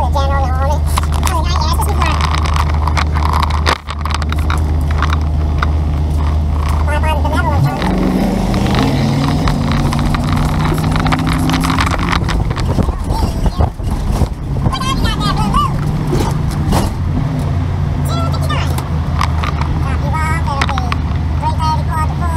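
A vehicle's engine idles with a steady low hum, then pulls away about eight seconds in, its pitch rising as it accelerates. Voices talk over it at times.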